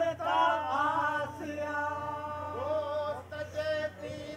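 Unaccompanied male voices singing a Sindhi devotional song, a lead voice holding long notes that waver and bend while others join in.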